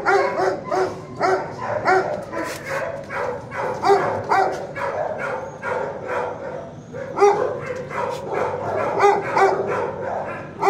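Dogs in shelter kennels barking over and over, a few barks a second, with a short lull about six seconds in before the barking picks up again.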